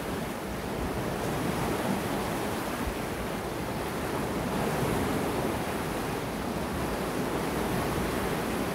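The River Ness in spate, high and fast after three days of persistent rainfall: a steady rush of flowing water.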